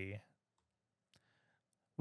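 Near silence after a spoken word trails off, with one faint computer-mouse click about a second in.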